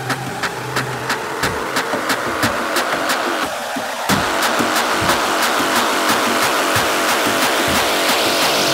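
Hard drum and bass played through a DJ mix, in a build-up section: a fast, steady percussion beat with the deep bass pulled out, and a rising noise sweep over the second half.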